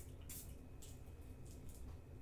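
A few short, faint hisses of a pump-action room spray bottle being sprayed, three quick puffs in the first second.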